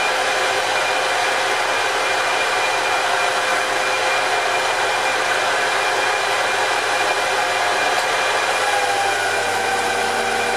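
Metal lathe running steadily at speed with its four-jaw chuck spinning, a steady whine of motor and gearing over an even hiss. The pitch shifts slightly near the end.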